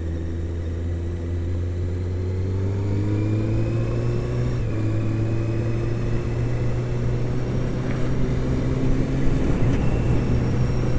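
Honda CBR600's inline-four engine pulling as the motorcycle accelerates. Its pitch rises over a couple of seconds, dips briefly with an upshift about halfway through, then climbs gently again.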